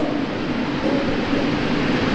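Steady background noise of a courtroom picked up through the bench microphone during a pause in speech: an even hiss with no distinct events.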